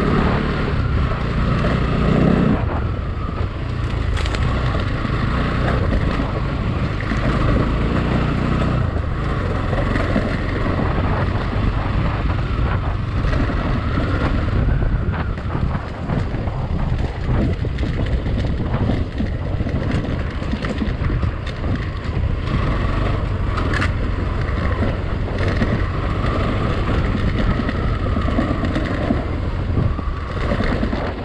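Motorcycle engine running as the bike rides over a loose gravel dirt track, with the tyres crunching on stones and wind buffeting the microphone.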